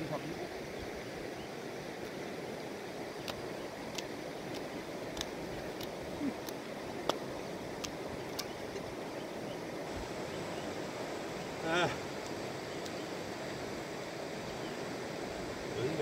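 Steady rush of a flowing river, with a few sharp clicks in the first half and a man's short shout of "hey" about twelve seconds in.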